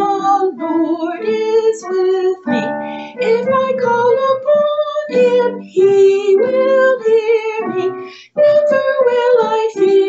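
A woman singing the melody of a children's sacred song, with instrumental accompaniment beneath her voice. The phrases run continuously, with one short breath-gap a little after eight seconds in.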